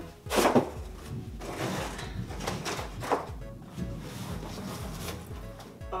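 Cardboard shipping box being pulled open and unfolded, with a loud tearing scrape about half a second in and then several shorter scrapes and rustles. Background music plays underneath.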